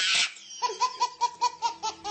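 A baby laughing hard: a fast run of short, high laughs, about six or seven a second, starting about half a second in after a brief burst of noise.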